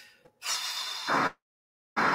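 A woman's single heavy breath out close to the microphone, a breathy rush lasting about a second, like a sigh.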